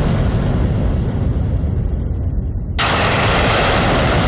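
Dramatic background-score sound effect: a loud, deep rumbling boom whose upper range dies away over nearly three seconds. It cuts abruptly back to a full, loud rumble about three seconds in.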